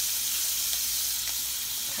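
Food sizzling steadily in a frying pan on a stove burner turned up too high, the pan smoking.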